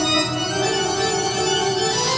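Recorded Baroque organ music: held chords whose notes move to new pitches now and then.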